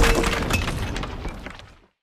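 Tail of a meteorite-impact crash sound effect: debris and glass crackling, clinking and breaking as the wreckage settles, dying away and fading out near the end.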